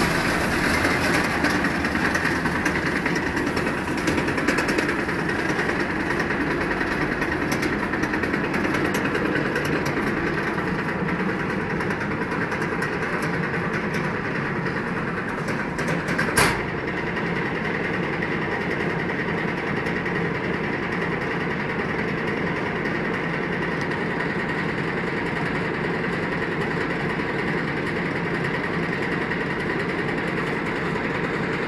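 Single-tube fabric reversing machine running with a steady mechanical hum and hiss. One sharp knock comes about halfway through.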